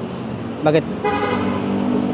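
A motor vehicle's engine passing close by: a steady hum with road noise that comes up about a second in and holds.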